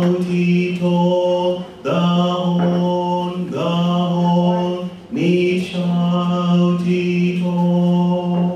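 Male a cappella vocal group singing in close harmony, with a steady low sustained bass note under higher moving voices; the phrases break off briefly about two and five seconds in.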